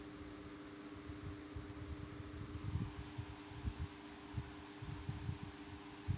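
Faint background noise from the recording microphone: a steady hiss with a low hum, under irregular soft low bumps and rumbles.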